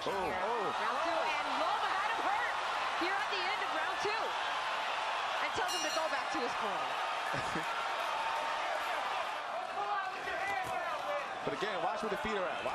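Boxing arena crowd: many voices shouting and calling at once in a steady wash of noise.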